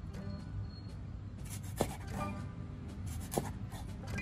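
A large kitchen knife cutting through a whole mackerel into steaks and striking a wooden chopping board: two sharp chops about a second and a half apart, each with a brief scrape of the blade through the fish. Background music plays underneath.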